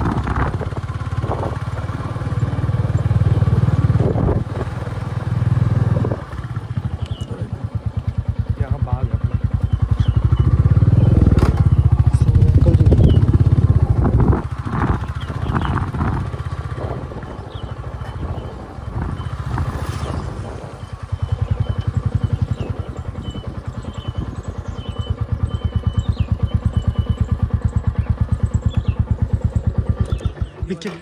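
Motorcycle engine running under way with a low, evenly pulsing rumble. It gets louder around ten seconds in and again a little after twenty.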